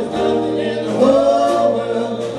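A live band plays a song, with male and female voices singing together over acoustic guitar, drums and upright bass. About halfway through, the voices hold a long note.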